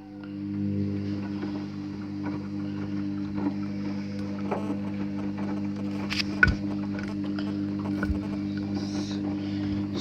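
Hoover HJA8513 washing machine starting its drum motor on a cotton 60 wash. A steady motor hum builds over the first second as the drum turns and tumbles the wet load. A few sharp clicks and knocks come from the drum partway through.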